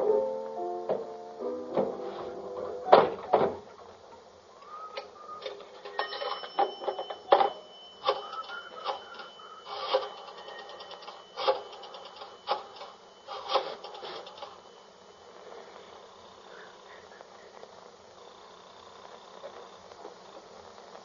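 Sound effects from a 1948 radio-drama recording. Music ends in the first few seconds. Then comes a string of clicks and knocks from a telephone being picked up and dialled, and quiet line noise fills the last few seconds.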